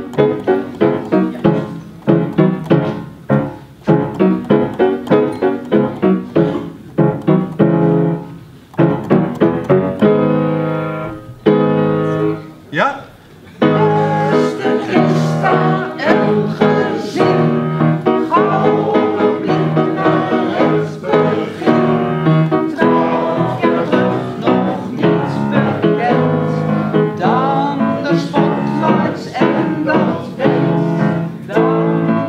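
Piano playing a song introduction in short repeated chords. About fourteen seconds in, singing starts over the piano accompaniment.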